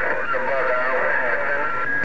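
A distant station's voice received over a President HR2510 10-meter/CB radio on 27.085 MHz, coming through the speaker thin and muffled in static.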